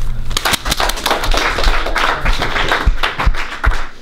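Applause mixed with laughter: a dense run of hand claps, with a few low thumps near the end.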